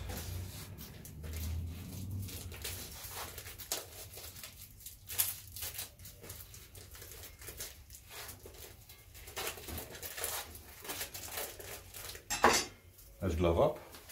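Plastic packaging around raw beef short ribs being slit with a knife and pulled open: irregular crinkling and tearing of plastic, with the sharpest rip or knock near the end.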